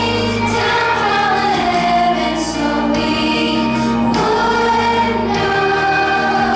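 A children's choir singing a Christian worship song together over instrumental accompaniment with a steady bass line.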